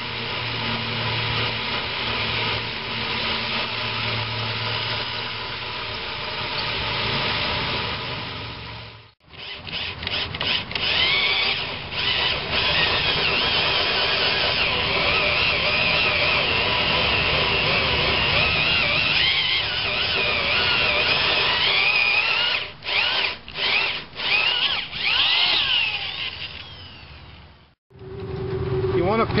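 Power drill driving a 2-3/8-inch hole saw through a fiberglass boat hull: steady motor running with the saw's cutting whine wavering in pitch. It breaks off briefly about nine seconds in, and near the end it runs in several short stop-start bursts before winding down.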